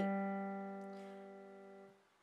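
A two-note left-hand piano chord, G and B played by the thumb and third finger, ringing out and fading steadily, then cut off near the end as the keys are released.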